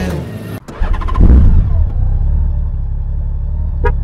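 Music fades out, then a Honda Gold Wing motorcycle engine runs close by with a steady low rumble, rising briefly about a second in. Two short beeps come near the end.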